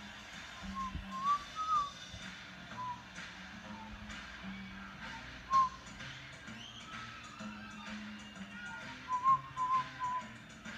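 A man whistling a few short, scattered notes, with a quick run of notes near the end, over quiet background music.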